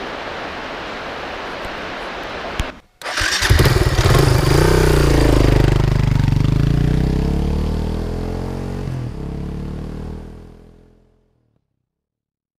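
A steady rush of river water, then after a short break a motorcycle engine starts up and runs loudly, its pitch wavering, before fading out near the end.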